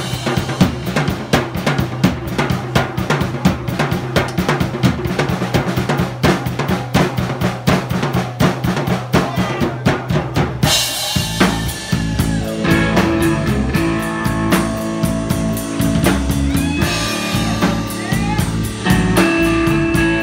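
Live blues-rock band: a Pearl drum kit plays a rapid solo of snare, bass drum and cymbals over a steady low note. About ten seconds in, the bass and electric guitar come back in with held notes, the guitar sliding between pitches.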